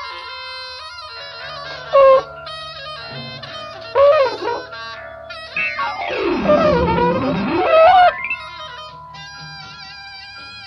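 Post-punk art rock recording, an instrumental passage of held tones. Short loud stabs come about two and four seconds in, and a louder stretch in the middle swoops down in pitch and back up.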